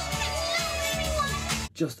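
Music mixed with crowd and children's voices from castle stage-show footage, cut off abruptly near the end as a man starts to speak.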